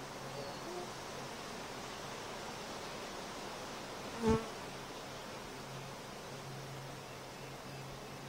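Honeybees from an opened hive buzzing steadily.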